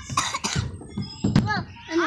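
A child's short vocal sounds, with a brief noisy burst near the start and one sharp click about one and a half seconds in.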